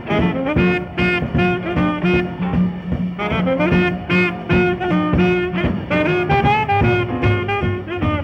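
1958 recording of a seven-piece jazz band playing uptempo swing: saxophone, trumpet and trombone play over a rhythm section of piano, guitar, double bass and drums keeping a steady beat.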